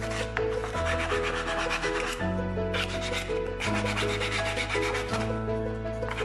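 Sandpaper rubbed by hand along a carved wooden spoon in quick back-and-forth strokes. Background music with a bass line and chords changing about every second and a half plays under it.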